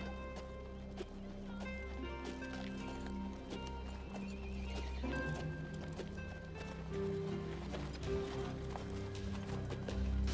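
Horse hooves clip-clopping, under film-score music with long held notes.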